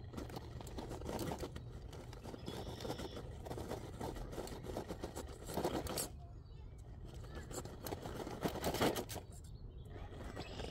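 RC rock crawler's rubber tyres scrabbling and scraping on rock as it climbs a steep boulder, with crackles of grit under the wheels and louder scrapes twice, about six and nine seconds in.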